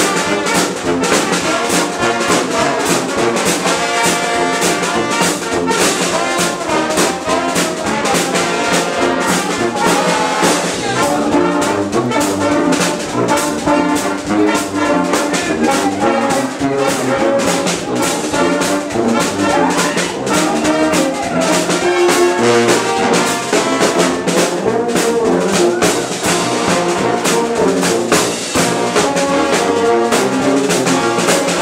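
Dweilorkest (Dutch brass street band) playing live: sousaphones, euphoniums, trombones and trumpets over a steady drum beat.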